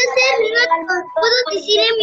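Children's voices talking without a pause.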